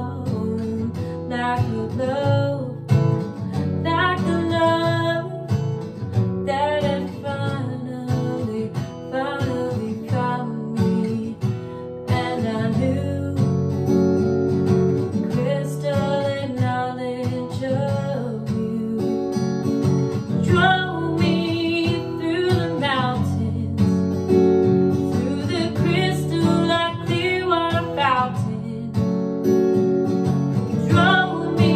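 An acoustic guitar played with a woman singing over it, with continuous chords and a melodic vocal line.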